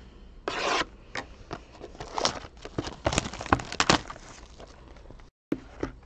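Plastic shrink-wrap being torn and peeled off a cardboard trading-card box, crinkling and rustling. There is a short rip about half a second in, then irregular sharp crackles, loudest about two to four seconds in.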